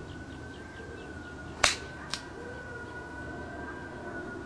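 A 5-iron strikes a golf ball in a short, firm half-swing for a low punch shot: one sharp click about one and a half seconds in, then a fainter click half a second later.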